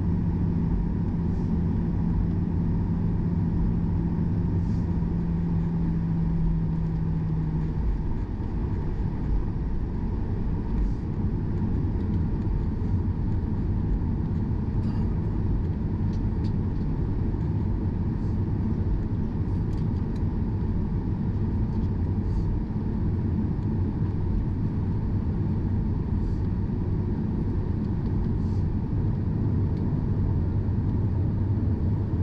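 Cabin noise of a Boeing 737-800 taxiing: a steady low rumble from its CFM56 engines at taxi power and its wheels on the taxiway. A steady hum runs along with it and stops about eight seconds in.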